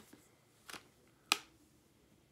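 Three short sharp clicks, the last the loudest, from makeup tools being handled as a handheld mirror and a makeup brush are picked up.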